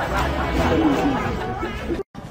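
Indistinct chatter of voices, with no clear words, over a low steady hum.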